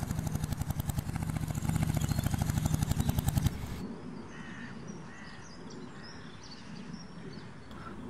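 Royal Enfield motorcycle's single-cylinder engine running with a fast, even thump, growing a little louder, then cutting off abruptly about three and a half seconds in as the bike is switched off. Faint outdoor background with a few bird chirps follows.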